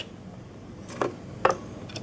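Two short, sharp clicks about half a second apart over quiet room tone: small plastic handling sounds as fingers work the Raspberry Pi's plastic case and the camera's flat ribbon cable near the connector.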